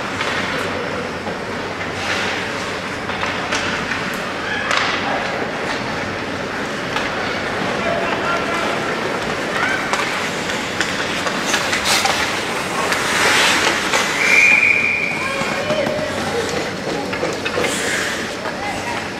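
Live ice hockey game sound in an echoing rink: a steady wash of skates on ice and play, sharp knocks of sticks and puck, and indistinct shouting and chatter from players and spectators.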